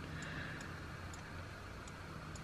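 Faint, irregular ticks of a computer mouse scroll wheel, about five in two seconds, over a low steady room hum.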